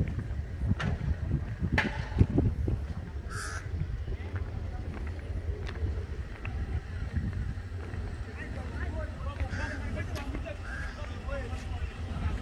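Wind rumbling on the microphone outdoors, with people's voices talking in the background, clearer in the second half.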